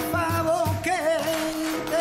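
A man's voice singing a long, ornamented held note that wavers and bends, over a live band of piano, drums, bass and hand percussion with a steady low pulse.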